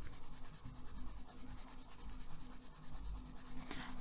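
Caran d'Ache Luminance wax-based coloured pencil shading on paper: a faint, uneven scratching of the lead across the paper.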